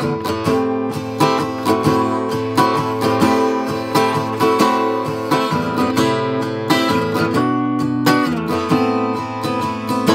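1966 Gibson J-45, a mahogany-bodied acoustic flat-top, strummed with a pick: full chords struck in a steady rhythm, several strums a second, with the chords changing as it goes.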